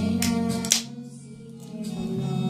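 Pop song with a guitar-led backing track and a girl singing into a handheld microphone. A sharp click comes about three-quarters of a second in, followed by a quieter gap before the music picks up again near the end.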